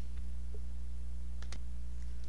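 Two quick computer-mouse clicks about a second and a half in, over a steady low electrical hum.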